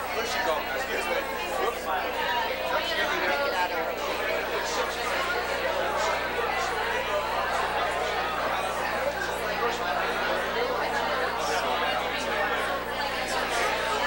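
Crowd of party guests talking at once: a steady babble of overlapping conversations with no single clear voice.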